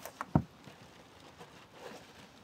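Two short knocks in quick succession near the start, the second a louder dull thump, as the cardboard box is handled and the packed bike inside is reached for; then only faint rustling.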